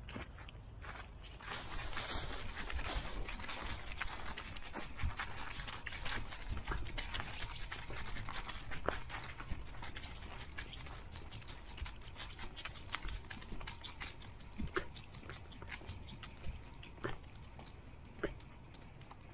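Dry fallen leaves rustling and crackling under a dog's paws as it walks, close to the microphone: a dense run of small crackles, loudest about one to three seconds in.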